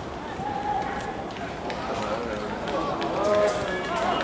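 Men's voices calling and talking across an outdoor football pitch, with a single knock of the ball being kicked.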